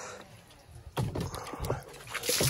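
A few short knocks and thuds from a plastic bucket of water being handled, starting about a second in.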